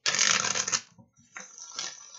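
A deck of reading cards shuffled by hand: a loud rush of shuffling in the first second, then softer shuffling after a short pause.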